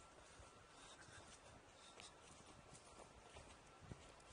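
Near silence: faint background hiss with a faint steady tone and a couple of faint ticks, one about two seconds in and one near the end.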